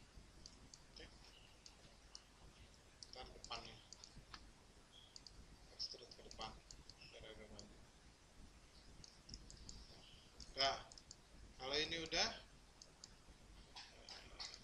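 Scattered, irregular clicks of a computer mouse at the desk while working in 3D modeling software, fairly quiet, with a cluster of louder sounds near the end.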